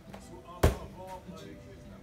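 Bare feet landing on a folding foam gymnastics mat with one sharp thud about two-thirds of a second in, as a gainer swing flip comes down.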